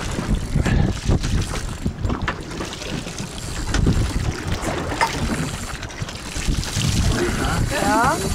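Wind buffeting the microphone aboard a boat at sea: an uneven low rumble that rises and falls in gusts, with faint voices under it.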